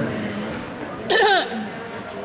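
A spectator's short loud shout, falling in pitch, about a second in, over the low murmur of a crowd of voices.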